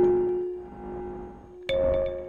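A sampled melodic pattern of pitched notes played through a Bastl Neo Trinity control-voltage module's meta input. The input's low, filtered sample rate gives it a dark, sample-rate-reduced sound with aliasing. One note decays away, and a new note comes in about 1.7 s in.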